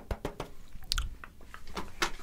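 Quick fingertip taps on a plastered wall right at a handheld microphone, about eight a second, stopping about half a second in. Then a crackle and a low bump as the microphone is handled and moved away.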